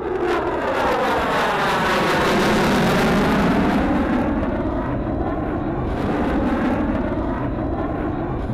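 F-22 Raptor fighter jet making a low pass, the noise of its twin turbofan engines swelling to a peak about two to three seconds in and then easing off as it moves away.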